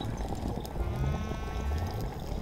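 Hookah water bubbling and gurgling as smoke is drawn through it.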